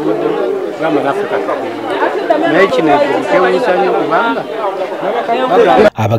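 A man talking, with other people's voices chattering around him; the sound cuts off abruptly just before the end.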